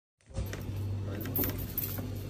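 Heavy steel chain leash clinking and jangling as the links shift, with repeated small metallic clinks over a steady low hum.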